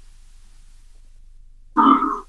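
A pause in a woman's speech with a faint steady hum, then near the end a short voiced sound like a hesitant 'uh'.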